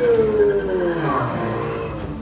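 Action-movie soundtrack played over home-theater speakers in a room: a vehicle sound with one strong tone that rises briefly, then glides down in pitch over about a second and a half, over a busy mix.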